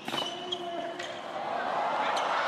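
Tennis rally on a hard court: sharp pops of the ball off the racquet strings and court, with brief rubber-shoe squeaks as a player lunges and changes direction. Crowd noise swells near the end as the point builds.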